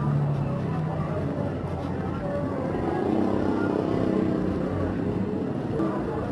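Street traffic: a motor vehicle's engine passing close by, building to its loudest a few seconds in, over the murmur of passing voices.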